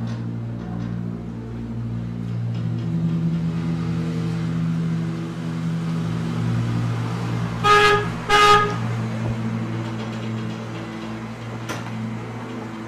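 Car horn tooted twice in quick succession about eight seconds in, two short pitched blasts, as an SUV pulls into the compound. A steady low drone runs underneath.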